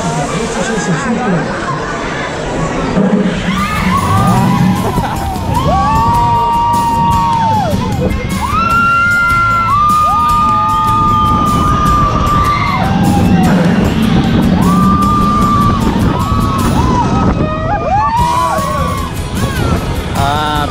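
Roller coaster riders screaming in long, drawn-out screams on the Cheetah Hunt launched coaster, over a rush of wind buffeting the microphone and the rattle of the train on the track.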